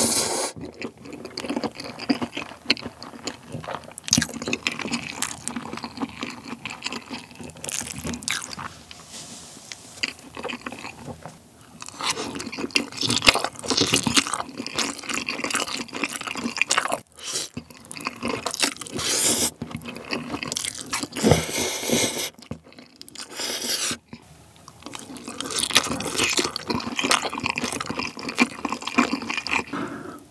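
Close-miked slurping and chewing of spicy cold noodles (bibim naengmyeon) eaten with chopsticks, in repeated irregular bursts of wet mouth sounds.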